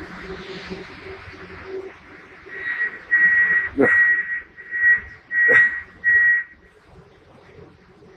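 A run of about six short, steady high beeps about two seconds in, typical of a train's door warning chime, with two sharp knocks among them.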